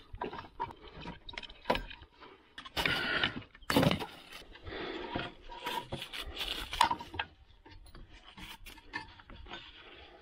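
Hand work on engine hoses: a screwdriver on a hose clamp and rubber hoses being pulled and handled, giving irregular clicks, scrapes and rubbing. The loudest scraping comes in two bursts about three and four seconds in, and it grows quieter over the last few seconds.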